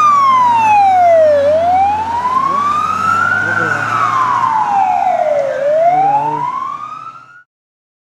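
Emergency siren on a rally safety car sounding a slow wail: the pitch falls over about two seconds, then rises again over about two seconds, twice. It fades and cuts off shortly before the end.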